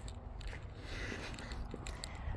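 Faint low rumble of wind and handling noise on a phone microphone as it is carried, with no distinct event.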